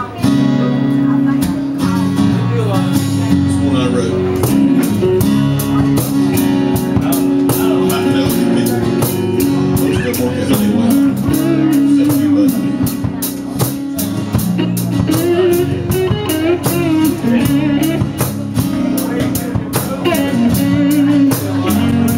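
Small live band playing the instrumental opening of an original acoustic song: a strummed acoustic guitar and an electric guitar with a steady, even rhythm and a melody line on top.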